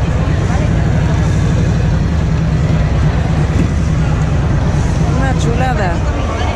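Harley-Davidson V-twin engine running with a steady low rumble at low revs as the bike is ridden slowly.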